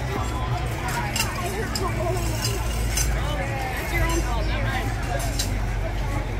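Indistinct chatter of several people waiting in a crowded queue, with a few sharp clicks and a steady low rumble underneath.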